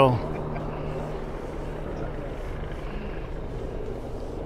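Steady distant town and traffic noise heard from a high lookout, with a low engine-like hum that fades out in the first second or so.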